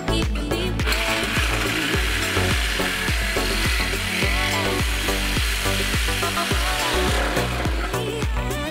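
A handheld power tool cutting through the steel of a donor radiator support. It starts about a second in, runs with a wavering whine, and stops shortly before the end. Background music with a steady beat plays throughout.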